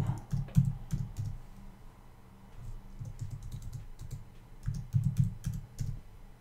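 Typing on a computer keyboard: a run of keystrokes near the start, a sparser stretch, then another run about five seconds in.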